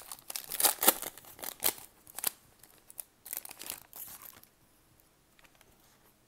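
A 2019-20 Panini Prizm basketball hobby pack's foil wrapper being torn open and crinkled by hands in a run of sharp crackling bursts. The crackling stops after about four and a half seconds.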